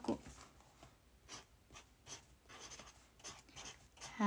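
Faint scratching of a pen writing on a sheet of paper, in short, irregular strokes.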